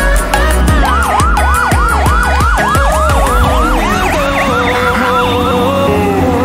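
Fire engine's electronic siren in a fast yelp, rising and falling about four times a second, starting about a second in over background music with a beat.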